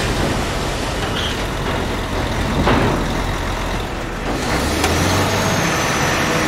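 Heavy truck running at highway speed, its engine drone mixed with road noise. The low engine note grows stronger about four and a half seconds in.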